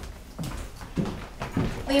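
Footsteps on a hardwood floor: a few soft thuds about half a second apart.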